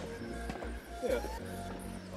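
Background music with held tones over a pulsing bass, and a brief spoken "yeah".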